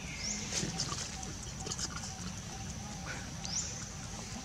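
Long-tailed macaques giving short squeaks and grunts, with two brief squeaks rising in pitch about a third of a second in and near the end, over a steady high-pitched insect drone.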